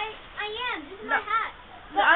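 A child's high-pitched voice making two short wordless calls, each rising and then falling in pitch.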